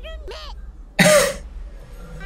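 A single loud, short cough about a second in, over faint cartoon dialogue.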